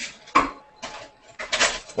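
A person eating hot dumpling soup with a spoon from a bowl: several short, noisy eating sounds about half a second apart.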